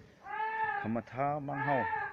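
A man's voice chanting in two long, drawn-out held notes, the second lower than the first.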